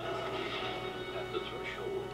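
Film trailer soundtrack played from a VHS tape: music with sustained tones under indistinct voices.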